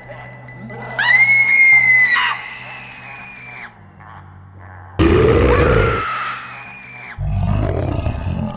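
A sudden high-pitched scream about a second in, then another abrupt loud cry with a deep roar about five seconds in, and a low growl starting near the end, over a steady low drone.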